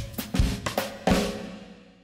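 A short drum-kit music sting: a few drum and cymbal hits in the first second, then the last hit rings out and fades away.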